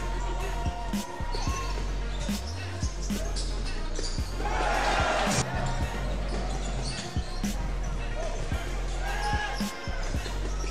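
Basketball dribbled on a hardwood court during live play, a run of sharp bounces, with a louder burst of voices about five seconds in.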